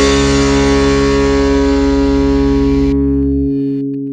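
Final distorted electric guitar chord of a hardcore punk song, held and ringing out over a deep low note. The upper ring fades about three seconds in, and the low note drops away near the end.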